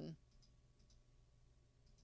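Near silence: room tone, after a woman's voice trails off at the very start.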